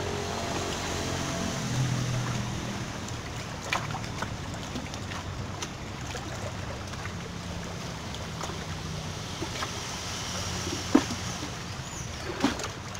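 Steady sea and wind noise at a rocky shoreline, with a faint low hum that comes and goes and a few light clicks.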